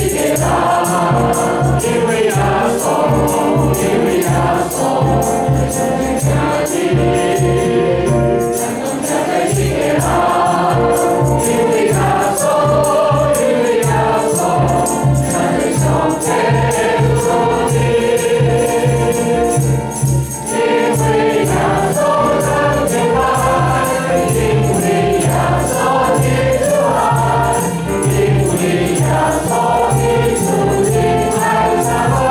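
Church congregation and choir singing a hymn together in Taiwanese, over a steady low pulse of accompaniment.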